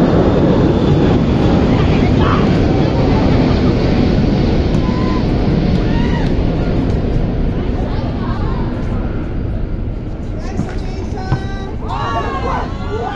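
A loud, low rumbling noise that slowly fades over about ten seconds, with short shouted calls from volleyball players that come close together near the end.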